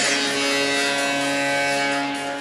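A steady buzzing tone with several overtones that starts abruptly, holds one pitch for about two seconds, then fades.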